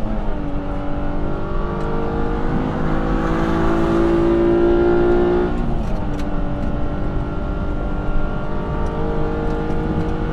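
Aston Martin One-77's 7.3-litre V12 accelerating hard, heard from inside the cabin. The engine note climbs steadily through a gear for about five seconds and is loudest near the top. The pitch drops as the six-speed single-clutch paddle-shift gearbox upshifts just after the start and again about six seconds in.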